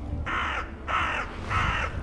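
A crow cawing three times, harsh calls of about a third of a second each, evenly spaced.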